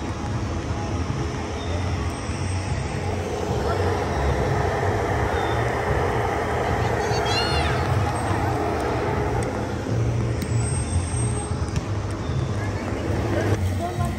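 Foam cannon running, a steady rush of air and foam over a low motor hum that swells in the middle. A brief high squeal, like a child's, comes about halfway through.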